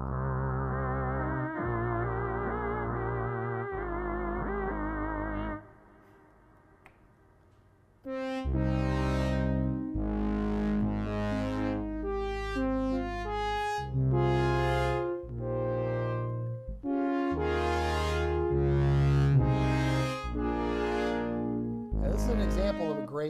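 Moog One analog polyphonic synthesizer played in chords. For about five and a half seconds there are held chords whose upper tones waver quickly. After a short pause, a dry synth-brass patch with no effects plays changing chords with bright attacks.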